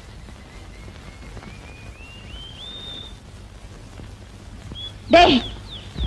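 A faint series of short whistled bird notes, each a little higher than the last, climbing over the first three seconds. A short loud cry comes about five seconds in, followed by a brief falling whistle.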